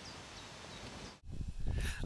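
Quiet outdoor ambience with a few faint bird chirps. It drops out abruptly a little past halfway, then a low rumble comes in.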